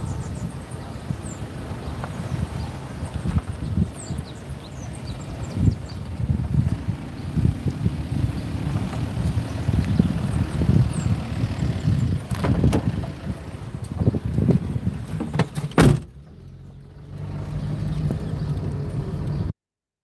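Wind and traffic noise beside a road, then a car door shuts with a sharp thud about sixteen seconds in, cutting off the outside sound. About a second later the car's steady low engine and road hum is heard from inside the cabin, until the sound stops abruptly near the end.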